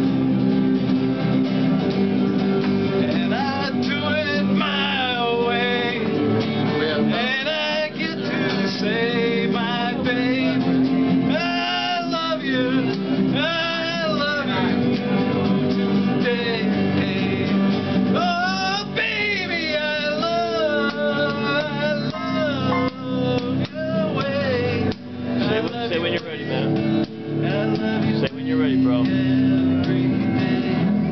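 A man singing to his own electric guitar: a steady strummed chord pattern, with his wavering sung melody coming in about three seconds in and carrying on over it.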